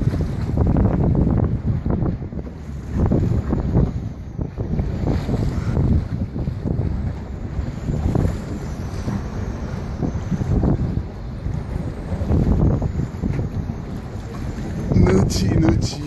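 Strong wind buffeting the microphone in gusts, a heavy low rumble that swells and drops every second or two.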